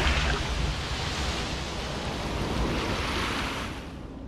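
Rushing wind and surf from the stormy-sea sound effect of the Chace Digital Stereo cinema logo, a steady roar that dies away near the end.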